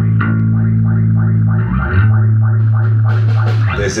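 Electric bass guitar holding long low notes, changing note about two seconds in, under an effects-processed guitar figure that pulses about four times a second. The music stops just before the end.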